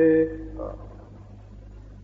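A man's voice ending a chanted Sanskrit verse on a held note that fades out about a quarter of a second in. After that only a low steady hum from the recording remains.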